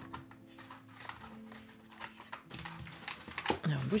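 Tarot cards being handled and lifted out of a cardboard box tray: faint scattered scrapes and light clicks of card stock and fingers against the box.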